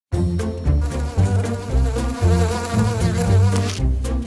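A cartoon insect buzzing sound effect with a wavering pitch, over intro music with a bass line. It starts abruptly right at the beginning.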